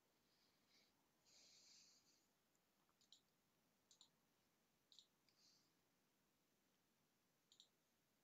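Near silence with faint computer mouse clicks, several coming as quick double clicks. A brief soft hiss comes about a second in.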